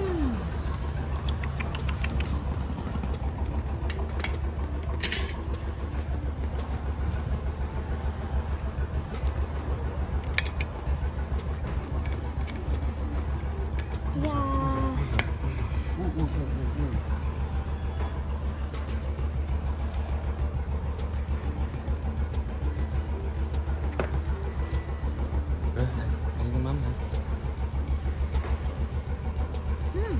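Steady low engine hum with an even pulse, running unchanged throughout, with a few brief snatches of voices partway through.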